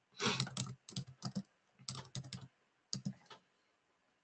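Typing on a computer keyboard: four quick runs of key presses with short gaps between them, as a short line of text is entered.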